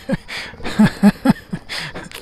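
A person's voice close to the microphone, in a few short, broken syllables.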